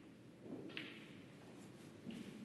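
Snooker balls colliding with one sharp click, which rings briefly, about three-quarters of a second in, over a low, even background hum.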